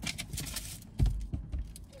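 A cardboard shipping box and its packing being handled and opened, with quick crinkling and crackling and a knock about a second in.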